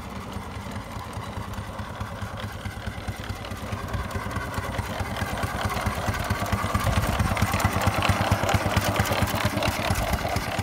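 A 4-inch scale Burrell steam traction engine under way: a rapid, even beat of exhaust chuffs, growing louder from about four seconds in.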